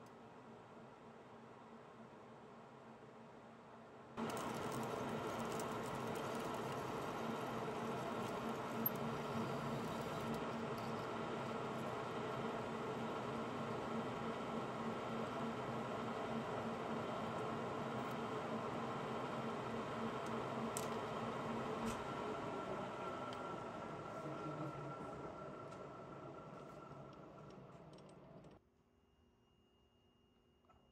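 Metal lathe running with a steady hum and gear whine, starting abruptly about four seconds in, dying away over the last several seconds and then cutting off.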